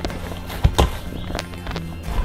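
Cornmeal dough being kneaded by hand in a stainless steel bowl: a few thumps as the dough is pressed and turned against the metal, over steady background music.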